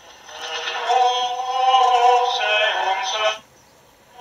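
Singing from a medium-wave broadcast played through a homemade one-FET radio, swelling up over the first second as the coil's slug brings the station into tune, then cutting out sharply a little after three seconds as it is tuned away: a demonstration of the high-Q coil's selectivity.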